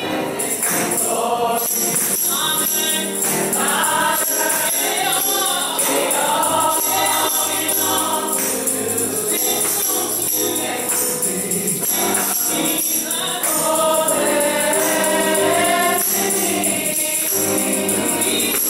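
Gospel song sung by a small group of voices, led by one singer at a microphone, with hand clapping and percussion keeping the beat.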